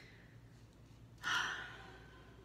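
A woman's single breathy sigh about a second in, sudden at first and then fading, over quiet room tone with a faint low hum.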